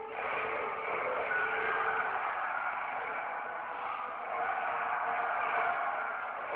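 Film action-scene soundtrack: a dense, continuous rush of noisy sound effects with a few faint held tones underneath, muffled.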